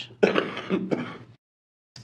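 A person clearing their throat, in two quick rasping parts lasting about a second.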